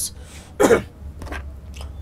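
A man clearing his throat once, briefly, about half a second in.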